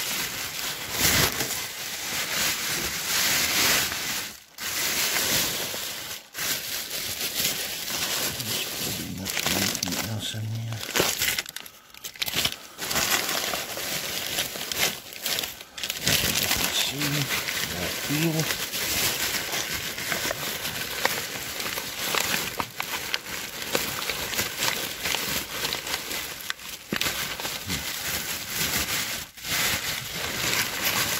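Plastic bin bags and packaging rustling and crinkling as they are pulled about and rummaged through by hand, with a few brief pauses.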